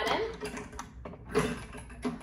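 Metal springs on a Pilates Wunda Chair being unhooked and moved to new pegs to change the resistance, light clicks with a louder clank a little past halfway.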